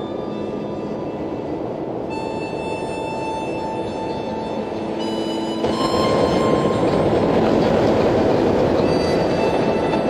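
Harmonica playing held chords with a lot of breath in the tone, giving a steady, train-like wash of sound. It swells louder a little past the middle.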